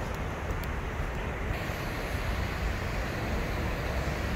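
Steady outdoor background noise dominated by a low rumble, with no distinct events; the hiss in the upper range grows louder about a second and a half in.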